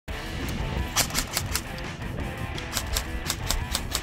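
Background music with two quick strings of sharp shots, about five a second, from a G&G TR80 airsoft electric rifle (AEG) firing: the first string about a second in, the second near the end.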